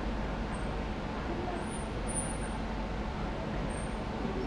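Steady low rumble of a lecture hall's air-conditioning.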